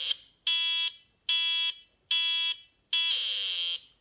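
A pre-programmed sound-processor chip on a DIY breadboard synthesizer plays through a small loudspeaker: a buzzy electronic tone in four even pulses, about one every 0.8 seconds, with silence between them. The fourth pulse is longer and higher. The chip is switching between two frequencies, one of them no longer audible, so the output comes out as a pulse.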